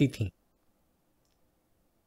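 A man's voice finishing a word in Hindi, then silence.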